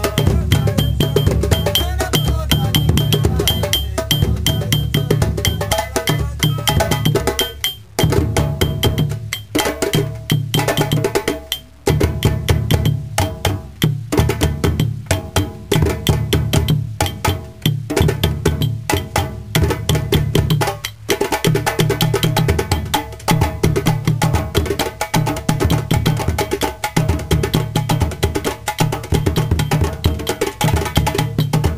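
Djembe hand drums and a large rope-tuned bass drum beaten with a stick, playing a West African rhythm together in fast, dense strokes. The playing thins out briefly about 8 and 12 seconds in.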